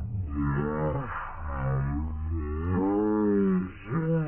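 A cartoon character's voice slowed down and pitched very low, stretched into a run of long, deep, wavering groans that rise and fall, with a short break just before the end.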